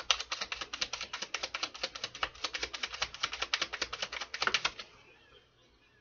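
Tarot cards being shuffled by hand: a fast, even run of card-edge clicks, about ten a second, that stops a little under five seconds in.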